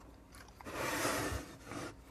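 Open bench power supply's sheet-metal case scraping across the bench as it is turned around: one rubbing scrape lasting over a second, starting about half a second in.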